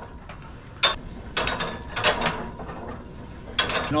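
Seated cable row machine in use: the cable running over its pulleys and the weight stack working as the handle is pulled and let back, with a sharp click about a second in and another near the end.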